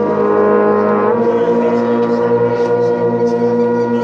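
A brass band of trumpets and trombones holds a long, loud sustained chord, moving to a new held chord about a second in.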